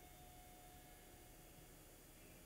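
Near silence: steady room tone with a faint hiss, and a faint thin steady tone that stops about three quarters of the way through.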